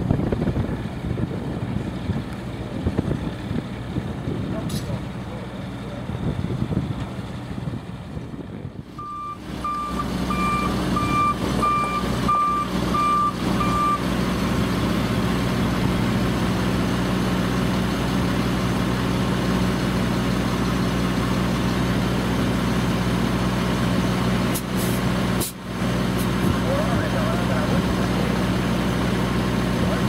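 Sperry rail-inspection hi-rail truck running on the track with a steady engine hum. About nine seconds in, a backup alarm beeps some seven times, about one and a half beeps a second, then stops while the engine carries on.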